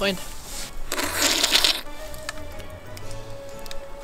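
Background music with a steady held note. About a second in comes a brief splash of water from a small plastic cup.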